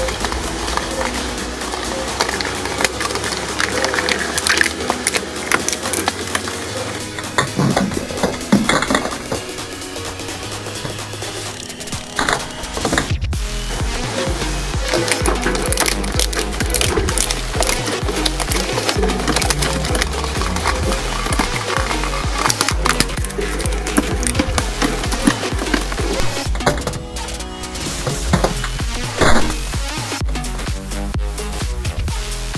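Electronic dance music with a steady beat, over repeated cracking and crunching of a hard plastic toy figure being chewed by the steel blades of a twin-shaft shredder.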